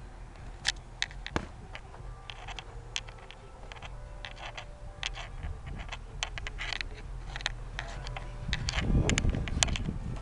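Boxing gloves landing during sparring: an irregular series of sharp slaps and smacks from punches and blocks, busiest and loudest near the end along with a low rumble.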